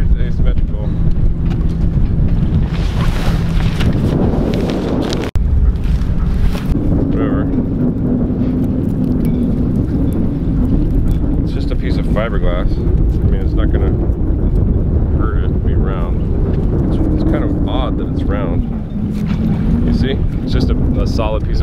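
Wind rumbling on the microphone, with faint voices underneath. The sound cuts off abruptly about five seconds in and picks up again at once.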